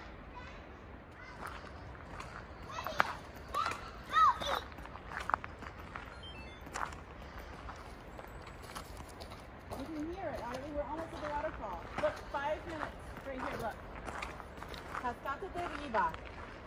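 Footsteps on a gravel forest path, with voices talking indistinctly over them: a high, sliding voice about three to four seconds in, and a lower voice talking from about ten seconds in.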